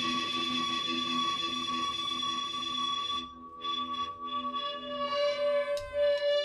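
Live electric guitar and bass music: a long, ringing held guitar tone over a repeating pulse of low notes. The sound thins out about three seconds in, then a new held note comes in about five seconds in.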